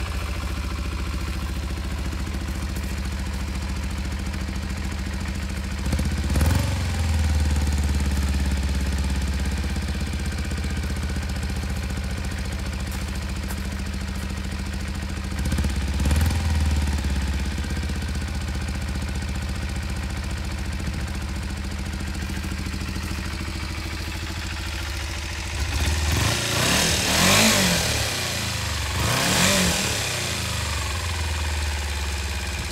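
Kawasaki KLE 250's single-cylinder four-stroke engine idling steadily, blipped briefly twice, about six and fifteen seconds in. Near the end it is revved several times in quick succession.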